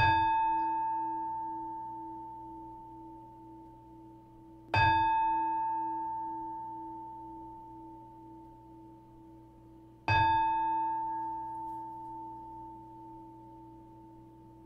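A meditation bowl bell struck three times, about five seconds apart. Each strike rings with a low tone under a brighter one and fades slowly before the next strike.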